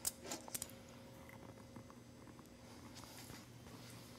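A few faint, light metallic clicks in the first half-second or so as straight pins are picked up from the table. After that the room is quiet except for a faint steady hum.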